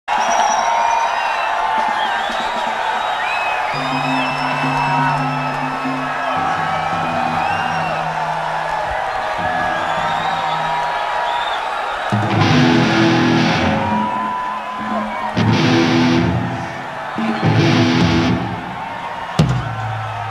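Rock band on stage with electric guitar, bass and drums: held low guitar and bass notes over crowd noise, then three short, loud full-band bursts a couple of seconds apart.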